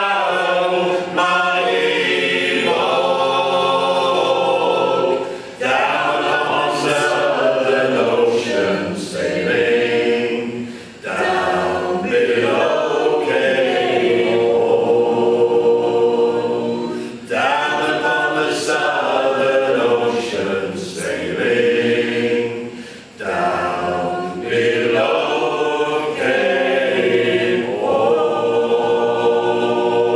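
Mixed group of men and women singing a sea song a cappella in harmony, in phrases about six seconds long with short breaks for breath between them.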